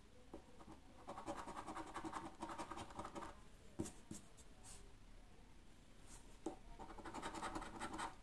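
A coin scraping the scratch-off coating from a paper scratch card, in two spells of rapid back-and-forth strokes, one from about a second in and another near the end, with a few sharp clicks between.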